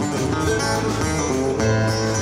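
Live string band playing an instrumental passage: acoustic guitar strummed over upright bass and drums, with no singing.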